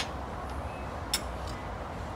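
Steady low rumble of distant highway traffic, with two short sharp clicks about a second apart.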